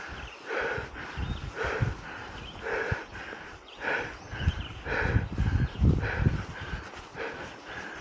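A cyclist breathing hard and rhythmically while pedalling, in and out about once a second. A low rumble from the bicycle rolling over the rough grass-and-dirt trail grows louder around the middle.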